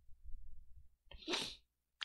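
A person's short, breathy burst of noise, like a sniff or sharp breath, about a second and a half in, between stretches of faint room noise.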